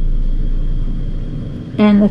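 Steady low background rumble and hum with no distinct knocks or clicks, followed by one spoken word at the very end.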